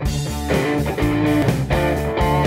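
A blues-rock band playing the song's opening: guitar over bass and drums with a steady beat.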